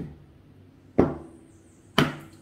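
A deck of tarot cards being cut by hand, the stacks set down with short, sharp taps: one about a second in and another at the end.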